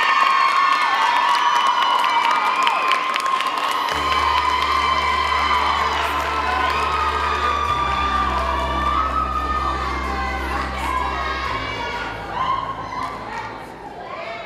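Audience cheering with sustained high-pitched screams from many voices. About four seconds in, a deep bass tone from the dance music starts underneath and shifts pitch twice.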